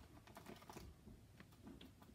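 Faint crinkling and small clicks of a tape-covered paper squishy being squeezed in the hands.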